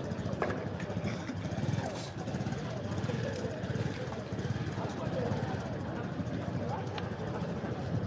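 Street ambience: a steady low rumble of motorcycle engines and traffic under faint, scattered voices of people in the street.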